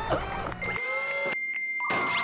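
Glitchy electronic intro sound effects: a jumble of short, warbling pitched snippets, joined about half a second in by a steady high beep.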